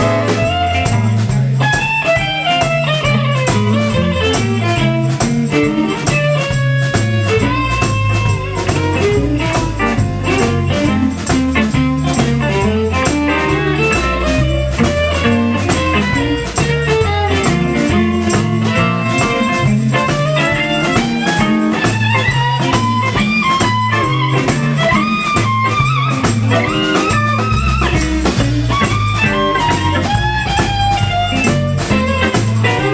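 Live blues band playing an instrumental passage: a lead line with sliding, bending notes over a steady stepping bass line and drums.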